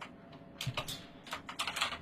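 Keys tapped on a computer keyboard: a handful of light clicks at uneven intervals.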